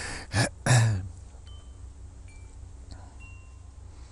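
A man's laugh in the first second, then faint wind chimes: a few separate ringing tones at different pitches, over a low steady hum.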